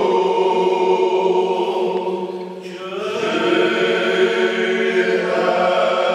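A small choir singing Corsican sacred polyphony in several parts, over a low note held steady throughout. The upper voices thin out briefly about two and a half seconds in, then come back in together.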